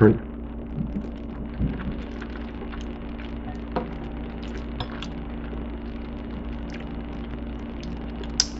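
A few faint clicks and scrapes of a metal fork against a ceramic bowl of macaroni and cheese as someone eats, over a steady low hum.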